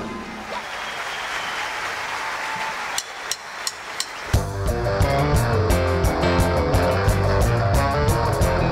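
The music breaks off into audience applause, with four sharp evenly spaced clicks about a third of a second apart just before the halfway point; then the live circus band starts up an upbeat tune with a strong bass line.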